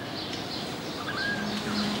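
Background birdsong: scattered short chirps and brief whistles over a low hiss, with a low steady note coming in about halfway through.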